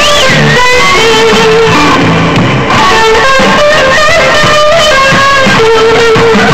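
Amplified electric guitar playing a blues solo of single-note lead lines, with held and bent notes.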